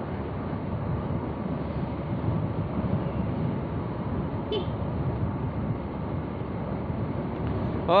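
Motorcycle engine running steadily at cruising speed, mixed with road and wind noise at the rider's microphone.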